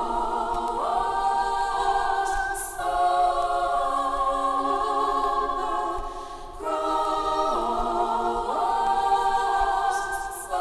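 Female vocal group singing a cappella in close harmony: held chords with swooping slides between notes, in phrases of three to four seconds and no instruments.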